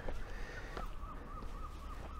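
A bird calling faintly, starting just under a second in, in a quick run of short repeated notes.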